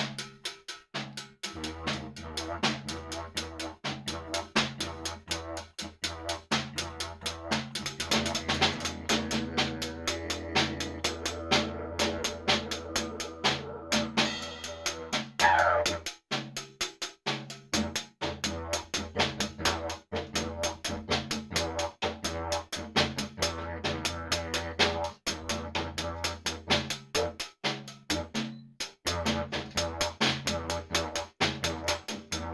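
A didgeridoo plays a steady low drone with a rhythmic pulse while the same player beats a fast, driving rhythm on a snare drum with one stick. The drone comes in a second or so in and drops out briefly about halfway, where a high note falls away, then resumes under the drumming.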